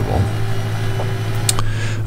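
Spindle sander with a sanding belt fitted, its motor running with a steady hum; a short click about one and a half seconds in.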